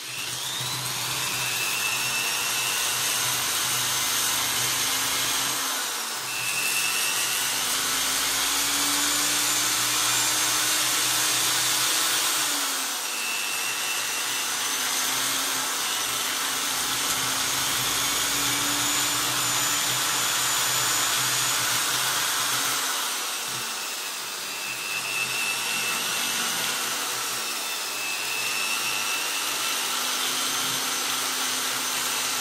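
Electric drill running steadily, its spinning twist bit scraping the scales off a fish. The motor's pitch dips briefly and recovers three times.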